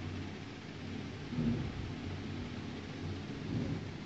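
Steady low room rumble and hum, with a brief thump about one and a half seconds in.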